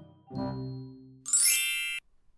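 A chime sound effect marking a scene change: two bell-like dings, each ringing and fading away, then about a second in a loud, bright, high sparkling chime sweep that cuts off suddenly.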